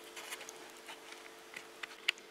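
Faint light clicks and taps of a teaspoon against a cocoa tin and ceramic mug as cocoa powder is spooned in, with one sharper click near the end.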